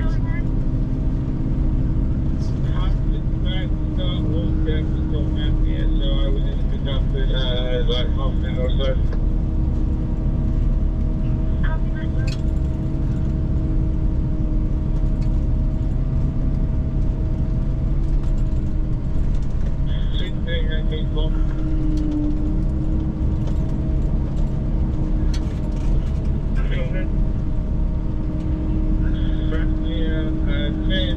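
Engine running at a steady drone, with two constant hum tones over a low rumble. Short patches of faint voices come through it a few times.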